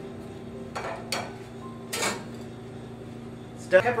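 Three light metallic clanks of a whisk and saucepans being handled on a stovetop, about a second in and again about two seconds in, over a steady low hum.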